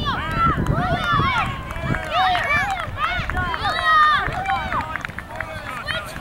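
Several voices calling and shouting across an outdoor sports field, overlapping one another without clear words, over a low rumble of wind on the microphone.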